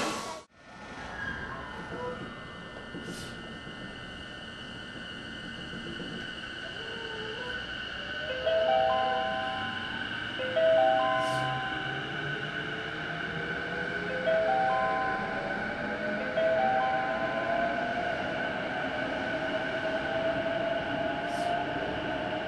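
Sotetsu 12000 series electric train pulling out of an underground station, heard from on board: the traction motor whine climbs slowly in pitch as it gathers speed over a steady high whine. Short groups of clear tones sound twice, then twice more.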